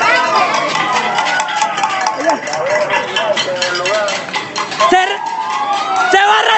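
Street protest noise: several siren-like wails glide up and down at once over a constant fast clatter of banging and raised voices.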